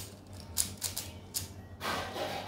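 Plastic puzzle cube being turned by hand: a few sharp separate clicks as its layers snap round, then a denser rattle of quick turns starting near the end.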